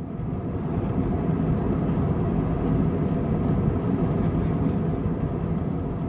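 Steady rumble of jet airliner cabin noise in flight, swelling up over the first second and then holding even.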